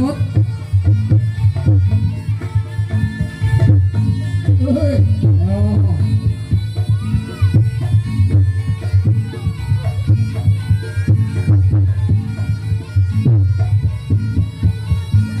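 Reog Ponorogo accompaniment music played loud and without a break: drums keep a steady rhythm under a reedy wind instrument, typically the slompret shawm.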